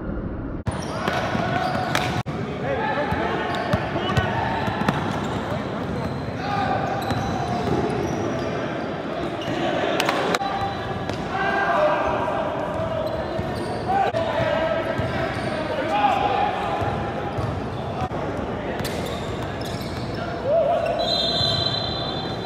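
Basketball game sounds in a gym: a ball bouncing on the court floor and sharp knocks of play, under shouting and chatter from players, coaches and spectators, echoing in the large hall.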